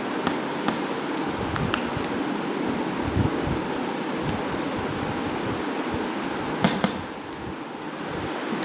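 White plastic spoon stirring and scraping a thick turmeric and lemon-juice paste in a glass bowl, with scattered light clicks of the spoon against the glass and two sharper taps near the end, over a steady background hiss.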